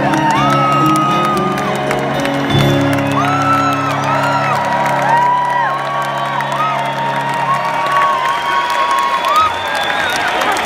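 Acoustic guitars and banjo let the final chord of a live song ring out, struck once more about two and a half seconds in and fading away by about eight seconds in. Over it the crowd cheers and whoops.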